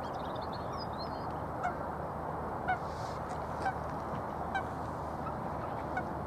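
Four short, pitched bird calls about a second apart over a steady background hiss, with faint high chirps of small birds near the start.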